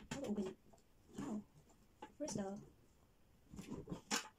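A woman's voice in four short murmured utterances, with quiet pauses between them.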